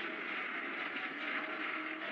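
Sci-fi sound effect of an asteroid breaking up in space: a steady rushing, hissing noise that slowly fades, with faint sustained musical tones underneath.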